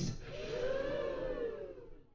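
Women in an audience giving a drawn-out 'ooh' together, many voices rising and then falling in pitch, dying away near the end.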